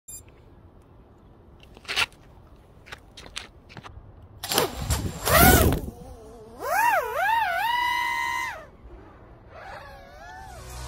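A few sharp clicks of handling on gravel, then a 5-inch FPV quadcopter's brushless motors spinning up loudly about halfway through as it takes off. The motor whine then swings up and down with the throttle, holds one steady pitch for about two seconds and fades.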